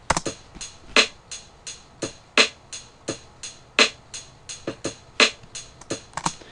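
Programmed drum-machine loop from the FL Studio step sequencer played back straight with no swing: even closed hi-hat ticks about three a second, with heavier snare hits about every second and a half. It sounds quantized, super digital and really snappy.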